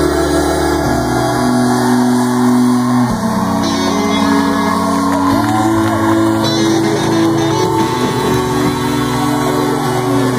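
Live band with electric guitar playing through a large festival PA, heard from within the audience: sustained chords that shift every second or two. Crowd voices are mixed in.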